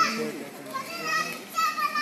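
High-pitched children's voices talking and calling out, in short bursts with brief gaps between them.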